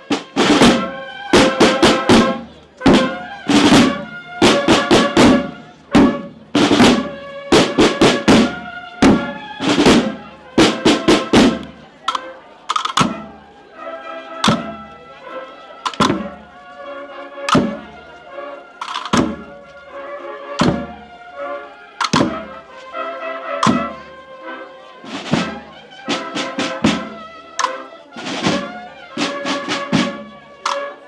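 A procession drum band of snare drums and bass drums playing a marching beat. The strikes are loud and busy for about the first twelve seconds, then settle into a sparser, quieter beat.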